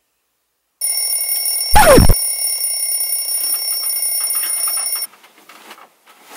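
An alarm clock bell rings steadily, starting about a second in and stopping abruptly at about five seconds. Near two seconds in, a brief louder sound falling in pitch cuts across the ringing.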